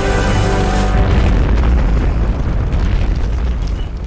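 A documentary's explosion sound effect: a deep boom and long low rumble that slowly dies down, under dramatic music whose held chord fades about a second in.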